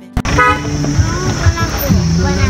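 Motor vehicle road noise with people talking, and a short horn toot about half a second in.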